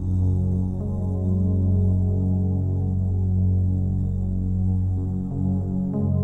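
Ambient meditation instrumental: a deep, steady drone of held low tones that shift pitch now and then.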